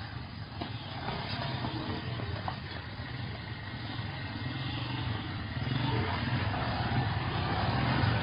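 Small motorcycle engine running and revving, getting louder toward the end.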